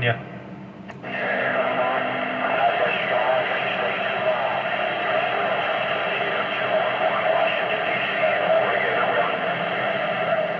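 CB radio speaker receiving a weak long-distance skip signal on channel 19: a steady band-limited hiss of static with a faint, garbled voice in it. It starts with a click about a second in as the set switches to receive.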